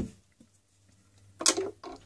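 Quiet room tone, broken about one and a half seconds in by a short, sharp vocal sound from a person, like a breath drawn before speaking.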